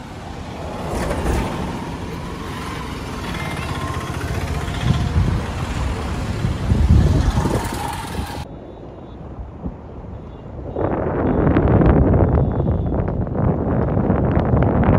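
Road traffic passing close on a bridge: cars, an auto-rickshaw and a motorbike going by, loudest about seven seconds in as the motorbike passes. After a sudden cut, gusty wind buffets the microphone from about eleven seconds on.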